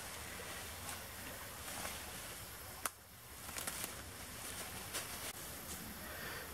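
Faint, steady outdoor background noise with light rustling and handling clicks, and one sharp click about three seconds in.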